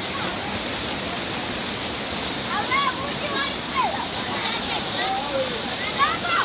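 Steady rush of a fast-flowing muddy stream, with water splashing as boys swim and thrash in it. From about halfway, boys' shouts and calls rise and fall over the water.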